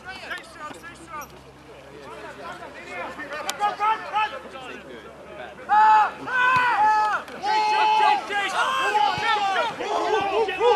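Rugby spectators' overlapping voices, low for the first few seconds, then loud drawn-out shouts from several men about six seconds in as play breaks open.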